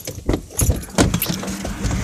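Metallic clicks and jangling from handling inside a car, a few sharp ones in the first second. A steady low hum follows from about a second in.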